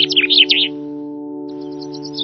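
A small bird chirping in a fast run of high notes, about eight a second, that stops about two-thirds of a second in and starts again near the end, over a held chord of slow ambient music.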